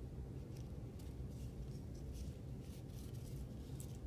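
Faint, scattered crinkles of a small piece of aluminium foil being handled and pressed onto paper, over a low steady room hum.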